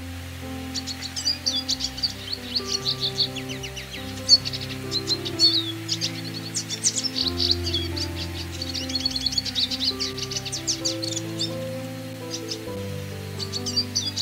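Siskin song: fast, twittering runs of chirps and buzzy trills, coming in just under a second in, thinning to a pause late on and starting up again near the end. Soft keyboard music with long held notes plays underneath.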